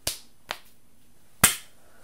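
Hands slapping together in a two-person secret handshake: three sharp smacks, a smaller one about half a second in and the loudest about a second and a half in.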